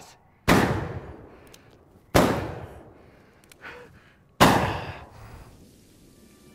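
Three gunshots about two seconds apart, each sharp crack fading away over a second or so.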